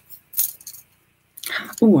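Brief rustling handling noise of a wrapped item being carefully undone by hand, with one short burst about a third of a second in, then a spoken 'Oh' near the end.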